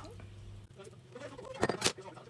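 Quiet kitchen handling at a mixing bowl as crab sticks are added to beaten egg, with two short sharp clicks near the end.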